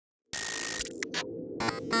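Electronic logo-intro sound effect: a hissing noise over a steady hum that starts about a third of a second in, broken by a few short bursts in the second half.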